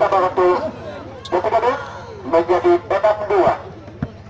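Men's voices talking and calling out in three short bursts, over a steady low hum.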